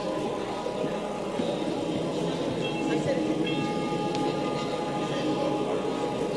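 Indistinct, muffled speech over a steady high ringing tone.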